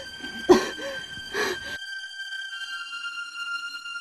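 A few sharp knocks, each with a short ringing tail, come a little under a second apart and stop abruptly about two seconds in. A sustained high droning music tone runs on underneath and continues alone.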